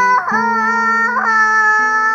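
A young girl singing loudly over upright piano, holding two long notes, the second a little higher.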